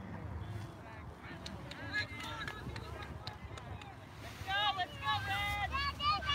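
Distant voices shouting across an open sports field, over a low wind rumble on the microphone. The calls become clearer and higher-pitched over the last second and a half.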